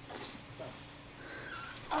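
A toddler's effort sounds while she rolls and pushes on a play mat: a short breathy rustle at the start and faint whimpering. Right at the end a louder, steady whining cry begins.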